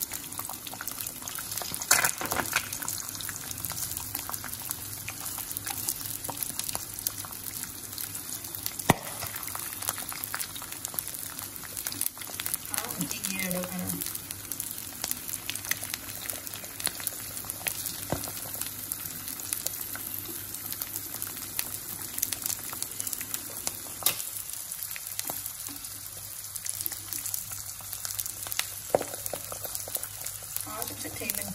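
Sausage slices and an egg frying in oil in a nonstick pan, sizzling with a steady crackle and a few louder pops, about two and nine seconds in.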